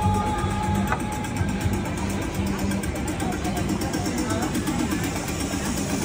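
Background music with held notes, under indistinct chatter of voices and a steady background hum.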